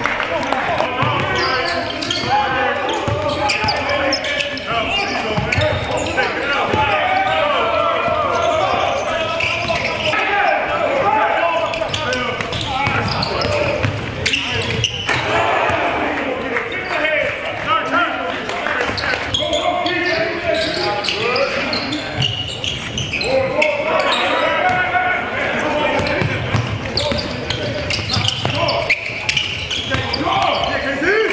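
Basketballs bouncing on a hardwood gym floor during a full-court scrimmage. Constant overlapping voices from players and onlookers echo through the large gym.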